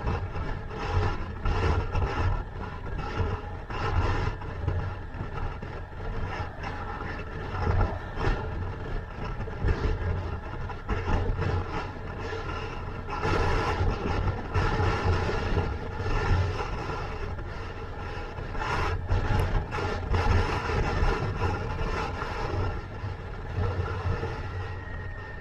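Motorcycle engine running at road speed, mixed with wind and road noise on the bike-mounted microphone. The loudness swells and eases several times.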